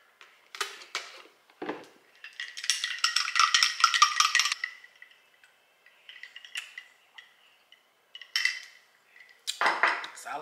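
Clinking in a glass mug as iced coffee is stirred: a rapid run of clinks lasting about two seconds, with a few single knocks of the mug or carton before and after.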